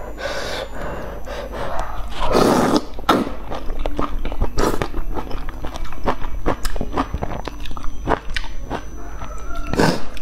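Close-up slurping and chewing of thick noodles: one long slurp about two seconds in, then wet chewing with many sharp mouth clicks.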